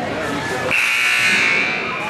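Gymnasium scoreboard horn sounding once for about a second, starting just under a second in, over a steady murmur from the crowd. The horn ends a break in play and calls the teams back onto the court.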